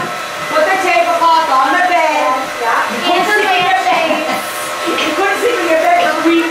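Indistinct conversation of several people, with a steady whirring hum underneath.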